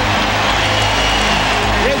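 Arena crowd noise from game footage, layered over a background music track with a steady bass line.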